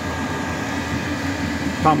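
Chinese diesel air heater running: a steady, even whir from its blower fan and burner.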